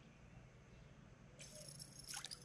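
Near silence, with a faint rattling hiss that starts about one and a half seconds in.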